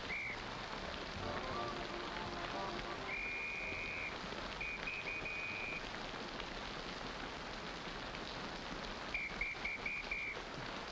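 Heavy rain pouring down on a city street. Over it, a doorman's whistle gives high, steady blasts to hail cabs: one about three seconds in, another around five seconds, and a run of quick short blasts near the end.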